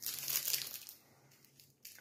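A chocolate bar's foil-lined plastic wrapper crinkling as it is handled, crackly for about a second and then fading away.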